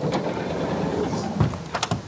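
A van's sliding side door rolling along its track, then shutting with a heavy thud about one and a half seconds in, followed by a couple of short latch clicks.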